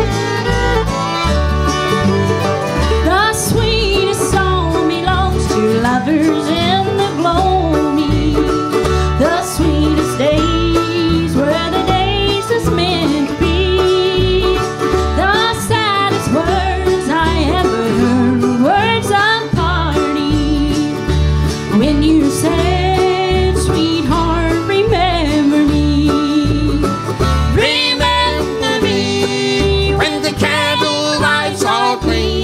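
Bluegrass band playing a slow love song live: fiddle, autoharp, acoustic guitar and mandolin over an upright bass keeping an even beat.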